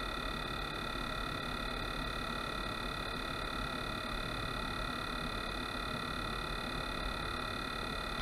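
A steady electronic tone made of several fixed high pitches over a hiss, unchanging, cutting off abruptly just after the end.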